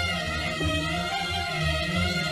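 Arabic orchestra playing an instrumental passage of the song, violins carrying a sustained melody over a pulsing low accompaniment.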